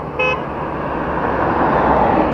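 A vehicle horn gives one short toot just after the start, over road and wind noise from a moving motorcycle. The noise swells steadily as a vehicle passes close alongside.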